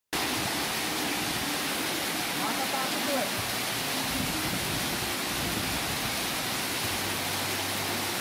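Heavy tropical rain pouring down in a steady, dense hiss.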